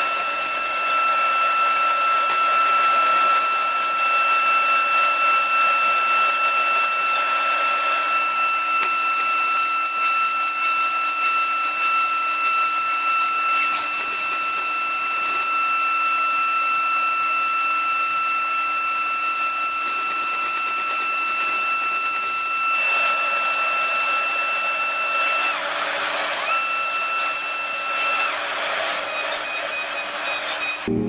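CNC milling machine's end mill cutting an aluminium workpiece: a steady high-pitched whine over a hiss. The whine breaks off near the end, comes back for a couple of seconds, then stops again.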